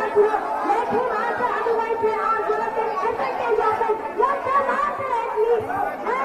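A large crowd of many people talking and calling out all at once, a dense, continuous chatter of overlapping voices with no single speaker standing out.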